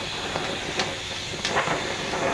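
Oxy-acetylene torch flame hissing steadily as it is played over the slag-covered face of a steel disc blade, with a few faint ticks. The flame is reheating the slag so that it flicks off the surface.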